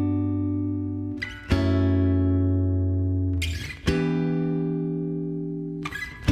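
Instrumental backing for the song's intro, with guitar chords struck about every two and a half seconds. Each chord rings on and slowly fades before the next. No voice comes in yet.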